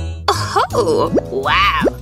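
Cartoon background music with springy, boing-like sound effects that slide up and down in pitch several times.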